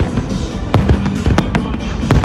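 Aerial fireworks shells bursting in a rapid series of sharp bangs, most of them in the second half, over music playing.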